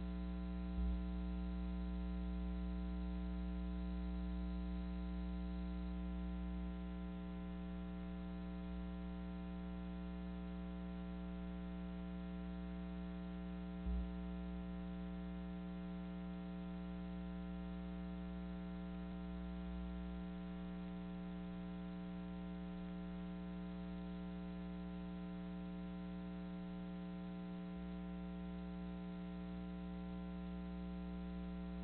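Steady electrical mains hum with a buzz of many overtones on a dead broadcast feed carrying no programme sound. Two brief low thumps break in, about a second in and near the middle.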